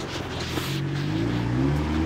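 A car engine running with a steady low hum, its pitch rising slowly as the revs climb in the second half, with a rush of noise from the phone being swung in the first second.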